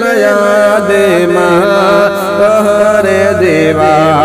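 Naat singing: a voice holding long wordless notes that slide smoothly from one pitch to the next.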